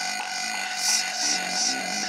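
Techno from a DJ mix in a stretch without kick drum or bass: a steady held synth tone with high, noisy hits recurring about three times a second.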